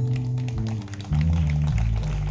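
Live rock band music: bass and guitars hold sustained notes, with a short drop in level about halfway through before the band comes back in.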